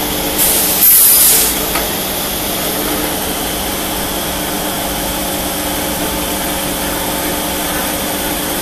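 Spiral paper tube winding machine running steadily, a mechanical drone with a faint electric motor hum. About half a second in, a loud hiss lasting about a second rises over it.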